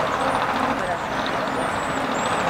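Steady rushing background noise with faint voices under it.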